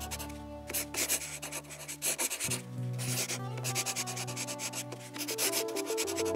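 Chalk scratching and rubbing on a blackboard in many short, quick strokes, over soft music with low sustained tones.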